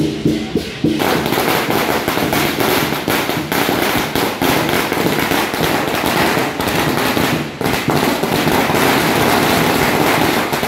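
A long string of firecrackers going off in a loud, dense, continuous crackle, starting about a second in. Before it starts, there is a short stretch of rhythmic percussion music.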